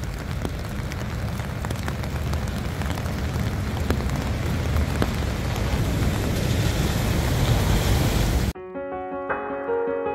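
Rain and wind noise on a phone microphone, a steady hiss with a heavy low rumble. About eight and a half seconds in it cuts off suddenly and piano music takes over.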